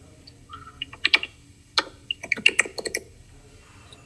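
Computer keyboard typing: a quick run of about a dozen keystrokes, starting about a second in and lasting around two seconds, as a short file name is typed.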